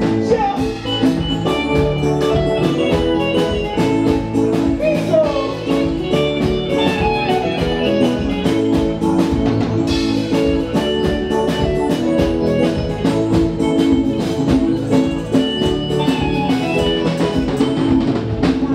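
Live band playing an upbeat African pop groove, with guitar, hand drums and a steady beat running throughout.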